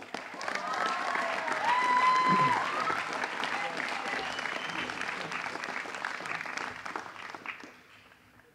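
Audience applauding, with a few voices cheering over it in the first seconds; the clapping is loudest about two seconds in and dies away near the end.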